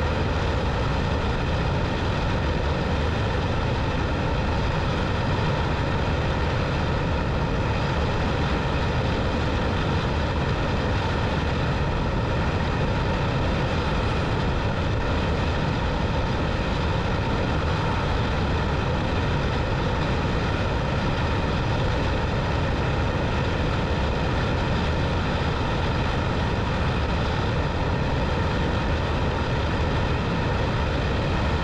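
Motorcycle cruising at a steady speed: a constant engine drone mixed with wind noise, unchanging throughout.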